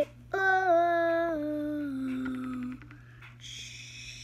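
A girl's voice holding one long hummed note for about two and a half seconds, its pitch stepping gradually lower. A short hiss follows near the end.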